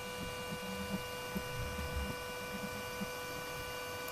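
Fokoos Odin-5 F3 3D printer running: its stepper motors lower the Z axis to bring the nozzle down to the print bed at a levelling point. It is a quiet, steady hum with several thin high whine tones over it and faint irregular low rumbling.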